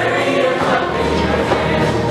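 Mixed show choir, girls' and boys' voices together, singing a song with music.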